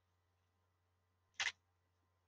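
Near silence between spoken passages, broken once by a short click-like sound about one and a half seconds in.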